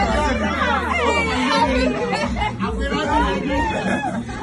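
Several people talking and exclaiming at once, voices overlapping in excited chatter, with a low rumble underneath.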